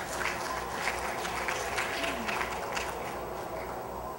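A seated audience applauding, many hands clapping at once, moderately quiet and thinning a little near the end.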